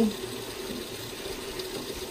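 Washing machine filling with water for a wash load: a steady rush of water with a faint hum.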